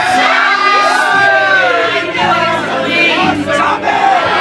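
Loud crowd of many voices singing and shouting together at once, held notes overlapping one another.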